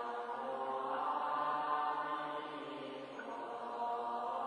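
A large assembly chanting a Buddhist liturgy in unison, on long held notes. The chant eases briefly about three seconds in, then a new phrase begins.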